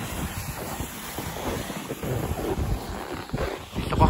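Wind buffeting the microphone: a steady rushing noise with irregular low rumbling gusts.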